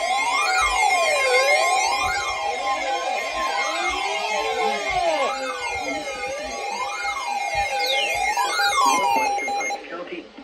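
Several weather alert radios sounding their alarms at once: a siren tone sweeping up and down about once a second over steady alert tones, the signal that a new warning is coming in. The alarms cut off near the end.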